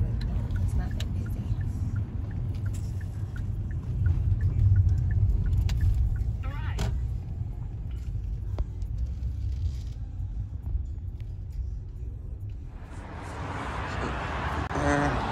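Low rumble of a car heard from inside the cabin as it drives slowly, with scattered light clicks. A louder hiss comes in near the end.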